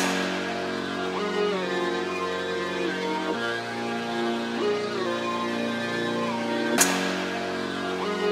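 Trap beat playing back, with only its melodic loop sounding: sustained notes, some of them gliding in pitch, over the loop's own bass line, while the drums and 808 are dropped out. A single sharp hit comes near the end.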